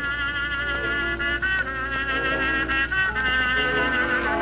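Music led by brass instruments, a melody of held notes with vibrato, over a steady low hum.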